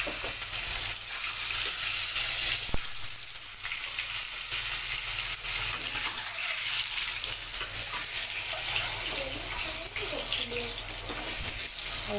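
Peeled hard-boiled eggs frying in hot oil in a steel kadhai: a steady sizzle full of fine crackles.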